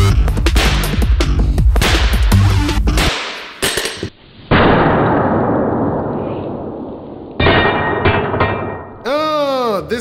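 A rapid run of hammer blows on bulletproof glass over loud background music with a heavy beat. About halfway through comes a sudden booming hit that trails off over a few seconds, then a second, shorter one, like edited impact effects. Near the end a sound effect wobbles up and down in pitch.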